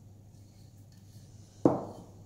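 Quiet room tone, then a single sharp knock about one and a half seconds in that fades quickly, as of an object set down on the tabletop.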